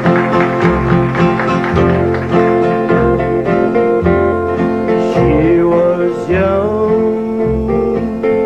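Country band playing a song's instrumental intro: electric and acoustic guitars over pulsing bass notes, with a few sliding notes past the middle.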